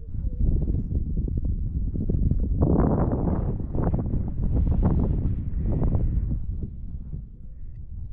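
Wind buffeting the camera's microphone, a rough rumble that swells strongest in the middle and eases off toward the end.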